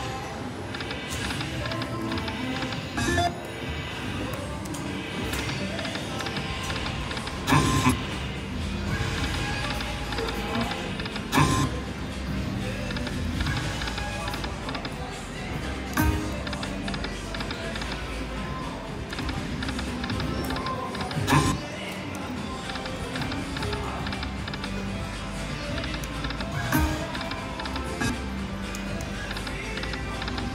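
Video slot machine playing its jingly reel-spin music and sound effects over a loud, steady casino din. A sharp knock comes about every four to five seconds, one for each spin of the reels.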